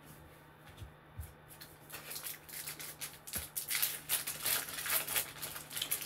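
A few light clicks of trading cards being handled, then from about two seconds in a card pack's wrapper crinkling and crackling as it is torn open.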